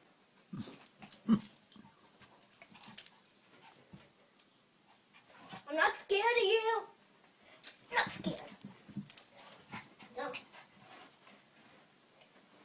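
A small dog gives one drawn-out, wavering whine-like call about six seconds in while begging for a toy, with a few short knocks and scuffles around it.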